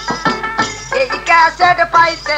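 Bengali jari folk music: drum strokes over held steady tones, then a wavering, bending melody line comes in about a second in.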